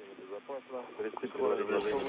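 Quiet speech over a radio communications loop, thin and cut off in the highs like a radio channel. A clearer, fuller channel opens near the end.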